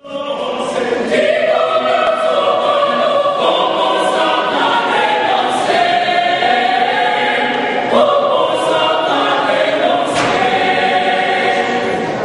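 A choir singing, several voices holding pitched lines together; it starts abruptly out of silence.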